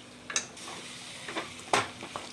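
Wooden spatula knocking against a metal kadai while stirring a thick chicken gravy: a few separate sharp knocks, the loudest near the end.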